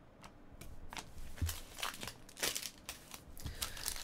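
Soft, scattered crinkling and rustling of a foil trading-card pack wrapper being handled in the hands, growing busier near the end, along with the light slide and click of cards being moved.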